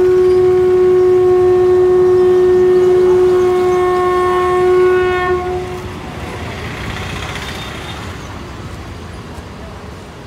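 A single long horn note, steady in pitch, held for about five and a half seconds before it fades. After it comes the busy murmur and bustle of a crowded street.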